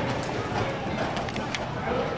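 Hoofbeats of a horse galloping on soft arena dirt, heard as a few sharp, irregular thuds.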